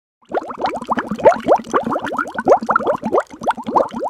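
Bubbling water sound effect: a rapid string of rising plops, about six a second, that cuts off suddenly at the end.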